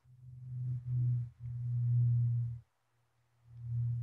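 A low, steady hum at one pitch that comes in three stretches, each about a second long, with short breaks between them.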